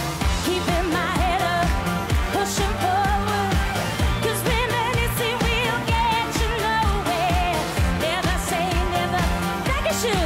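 A pop song played live: a woman's strong lead vocal, with wavering vibrato on held notes, over a band with a steady, driving drum beat.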